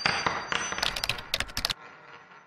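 Logo intro sound effects: a ringing metallic hit fades, then a quick run of sharp clicks cuts off suddenly near the end, leaving a faint echoing tail.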